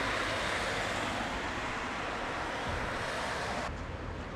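A car passing close on an asphalt road: a steady rush of tyre and road noise that eases off slightly as the car goes by. Near the end it gives way to quieter, duller roadside traffic noise.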